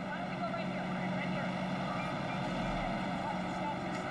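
Steady drone of an idling emergency vehicle's engine, with faint voices behind it.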